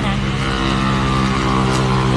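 A steady, low mechanical hum, like an engine running at constant speed, with several even pitched tones that do not change.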